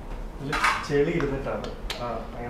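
Clinking and clattering of small hard objects being handled, ending in one sharp click, with a voice speaking briefly in the middle.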